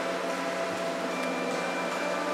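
A steady hum with hiss, holding a few fixed tones, with no sudden sounds.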